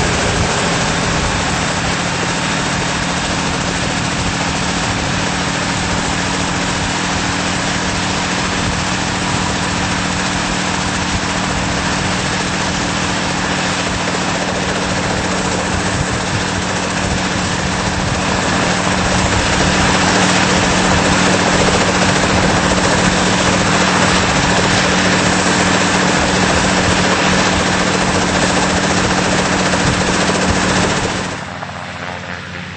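Sikorsky H-34 helicopter running, with its nine-cylinder Wright R-1820 radial piston engine and turning main rotor making a loud, steady drone. The sound grows louder about two-thirds of the way through.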